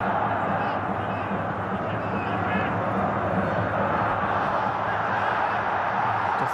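Steady stadium hubbub from the match's live sound during open play, with faint indistinct voices in it.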